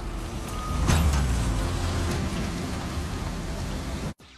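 Excavator and dump truck working in an open pit, a low engine rumble that grows louder after a short hiss about a second in, with a steady high tone sounding through the first second. The sound cuts off suddenly at the end.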